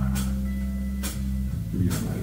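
Live rock band playing under a pause in the spoken word: electric guitar and bass hold low notes, with a cymbal struck about once a second.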